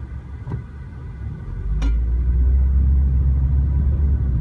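Steady low road and engine rumble of a 2012 Mitsubishi Lancer GT-A 2.0 CVT under way, growing louder about one and a half seconds in and then holding.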